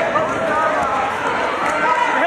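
Several voices calling out at once, overlapping, from spectators and coaches at a youth wrestling bout.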